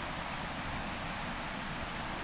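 Steady outdoor background hiss with no distinct events: the open-air ambience of a rural hillside.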